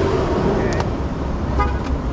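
A long, steady car horn blast that ends about half a second in, over a constant low rumble of traffic; a couple of light plastic clicks follow as video game cases are handled.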